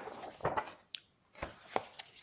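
Pages of a large comic album turned by hand: paper rustling with about four short slaps and taps as the pages flip over and settle.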